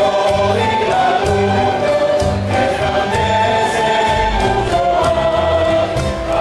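Canarian parranda folk group playing and singing: several male voices singing together in chorus over strummed guitars and timples, with accordion, in a steady dance rhythm.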